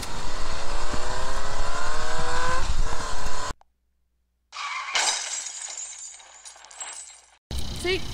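A vehicle engine revving up, rising steadily in pitch for about three and a half seconds. After a second of silence comes a sudden crash that fades away.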